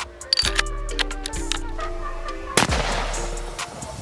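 A single rifle shot from a bolt-action hunting rifle about two and a half seconds in, with a ringing tail that lasts about a second, over background music. A sharp click comes about half a second in.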